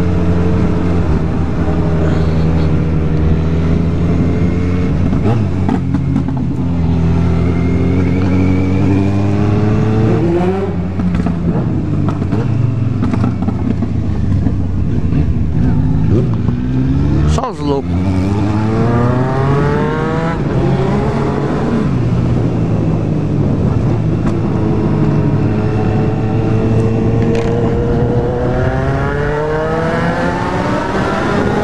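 Kawasaki Z750 inline-four engine pulling hard under the rider, its pitch climbing and then dropping back again and again as it shifts up through the gears, with a brief sharp cut in the sound about 17 seconds in.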